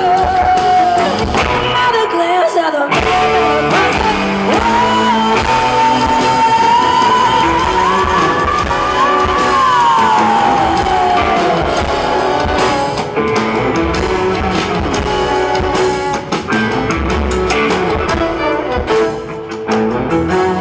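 Live band music: a female singer holds one long, high note that slides downward about halfway through, over acoustic and electric guitars and drums.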